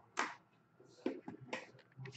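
Faint handling noises of shrink-wrapped card boxes being lifted and shifted on a glass tabletop: a handful of short taps and scuffs, one just after the start and several close together in the second half.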